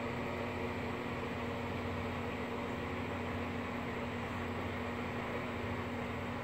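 Steady mechanical hum with an even hiss behind it, unchanging throughout.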